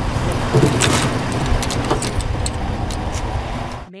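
A pickup truck running close by, a steady rumbling noise, with a few sharp metallic clicks as tools in the truck bed are handled. The sound cuts off suddenly near the end.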